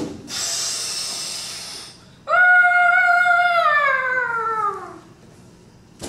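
A person's voice making sound effects: a hissing rush lasting about two seconds, then a loud, high held note that slides steadily down in pitch and fades out.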